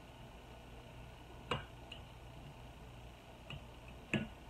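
A few faint clicks of a thin metal tool being wiggled in under the glass lid and rubber seal of a sealed canning jar: one sharper click about a second and a half in and a fainter one near the end, over quiet room hum.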